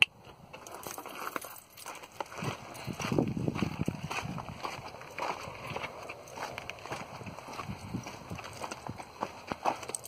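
Footsteps on gravel, an irregular run of steps with small knocks.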